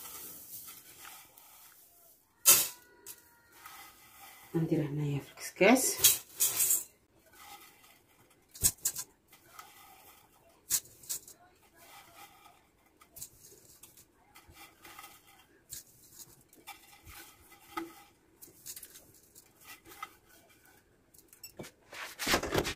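Handfuls of oiled vermicelli (seffa) rustling as they are moved by hand from a ceramic dish into a metal steamer pot, with scattered clicks and knocks of dish and pot. The sharpest knocks come about two and a half, six and eight and a half seconds in.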